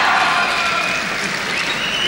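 Fight crowd applauding and shouting at a knockdown, loud and steady, with long drawn-out shouts over the clapping.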